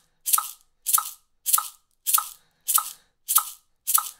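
A single maraca shaken in steady quarter notes at 100 beats per minute: seven even, crisp shakes, a little under two a second, each with a short metronome click on the beat.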